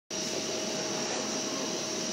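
Steady machine whirr: an even hiss with a thin high whine and a fainter lower hum held level throughout.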